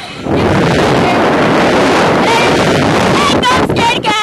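Loud wind rush over an onboard camera microphone as a slingshot reverse-bungee ride capsule flies, starting suddenly just after the start. From about two seconds in, the riders scream and laugh over it.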